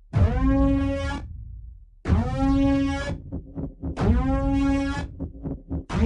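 Trailer score: loud horn-like blasts, one about every two seconds, each swooping up in pitch at its start and then held for about a second over a rumbling bass. Between the later blasts come quick, sharp percussive hits.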